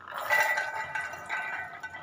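Pomegranate seeds poured from a plastic bowl into a stainless-steel mixer-grinder jar, falling in with a clinking rush that sets the steel jar ringing.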